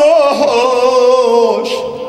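A man's voice singing a long held note in a chanted recitation, amplified through microphones; the note bends slightly as it starts and fades away about a second and a half in.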